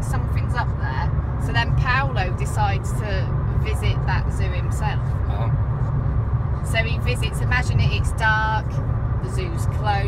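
Steady low road and engine rumble inside a moving car's cabin, with people talking over it.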